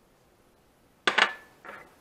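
A small glass bowl set down on a smooth cooktop with a sharp clink that rings briefly about a second in, followed by a softer second knock.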